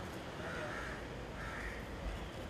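Two harsh bird caws about a second apart, over a low steady background rumble.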